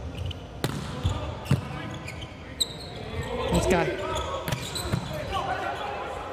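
A few sharp knocks of a volleyball being bounced on the court floor, spaced irregularly, over the noise and voices of an indoor arena hall.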